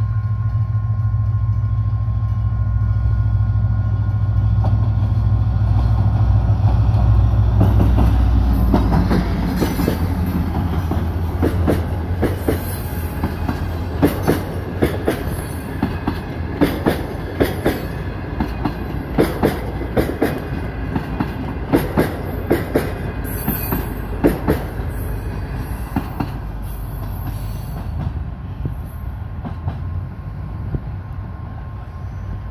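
EMD GT22CW diesel locomotive's 12-cylinder two-stroke engine running with a heavy low rumble as it passes, loudest about seven seconds in. Its passenger coaches then roll by, their wheels clacking over rail joints in paired knocks about every two and a half seconds, fading as the train draws away.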